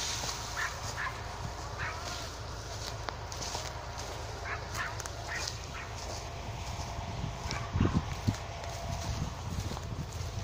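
Several short animal calls scattered through the first six seconds over a steady low rumble, with a few thumps near eight seconds.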